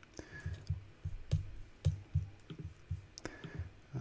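Soft, irregular clicking of a computer keyboard and mouse, a few clicks a second.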